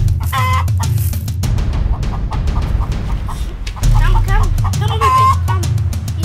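A hen clucking and squawking as it is grabbed and held, in short calls: one near the start and a run of them about four seconds in. Background music with a steady low beat plays under it.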